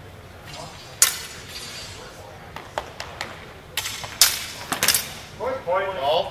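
Steel longsword blades clashing in a fencing exchange: one loud ringing clash about a second in, then a quick run of several more clashes between about two and a half and five seconds. A short shout follows near the end.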